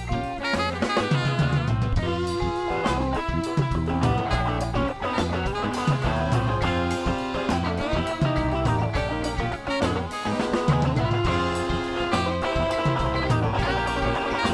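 Instrumental band music with the drum kit up front: snare, drums and Zildjian cymbals played in a busy, steady groove over bass and other pitched instruments.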